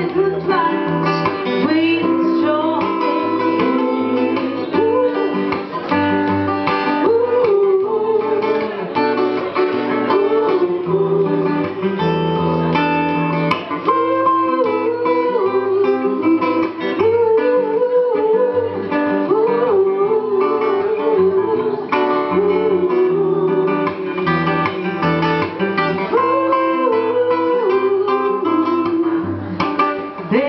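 Strummed acoustic guitar playing a reggae song, with a voice carrying a wavering melody over the chords at times.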